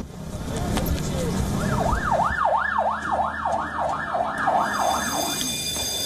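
Emergency vehicle siren sounding a fast up-and-down yelp, about two and a half sweeps a second, starting about a second and a half in and stopping shortly before the end, over a noisy street background.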